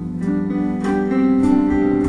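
Live band music in an instrumental gap between sung lines of a slow song: held chords with a steady beat of percussive hits about every 0.6 s.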